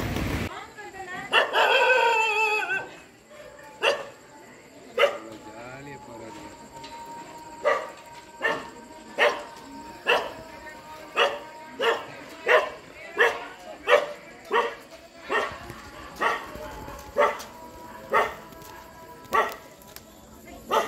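A dog barking over and over, short sharp barks coming about one and a half times a second for most of the stretch, after a couple of single barks. It opens with a loud wavering cry in the first few seconds.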